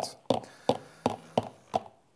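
Light knocks at an even pace, about three a second: a stick blender being tapped against the rim of its jug.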